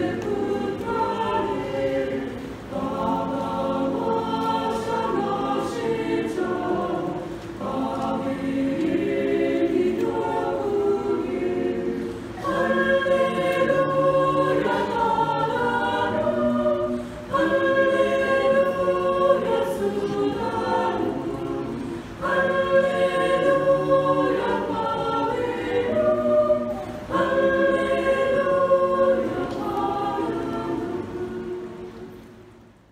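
Mixed church choir of women's and men's voices singing a Malayalam Christmas hymn, in held phrases of about five seconds with short breaks between lines.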